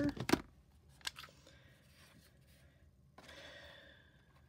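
Sharp plastic clicks from craft tools being handled on a desk: several right at the start and one more about a second in. About three seconds in comes a short papery scrape as cardstock is slid into the slot of a whale-shaped paper punch.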